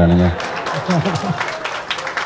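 Audience clapping, beginning a moment in as a man's amplified speech stops, with faint voices mixed in.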